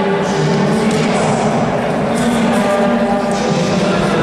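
Men in the crowd at an MMA bout in a sports hall shouting long, drawn-out calls, several voices overlapping, over steady hall noise.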